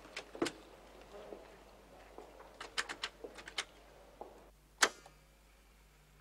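Telephone line clicks as a call is put through: a quick run of about five small clicks like a number being dialled, then one louder click as the line connects, leaving a faint steady low hum on the line.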